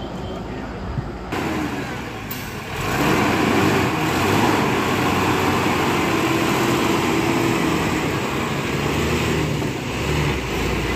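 Highway traffic noise with a heavy vehicle's engine running. The sound jumps abruptly twice and is louder from about three seconds in.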